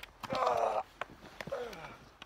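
A man's loud shout about a third of a second in, and a second voice sound falling in pitch near the end. A few sharp knocks come from wooden sticks clashing in a mock sword fight.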